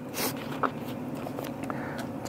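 A brief soft rustle, then a few light clicks of a six-sided die rolled into the wooden dice tray of a laser-cut game board.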